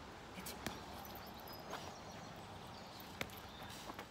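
Quiet scuffling from a working dog holding a bite on a padded bite suit, with a few short sharp clicks of feet shifting on brick paving, the clearest about three seconds in.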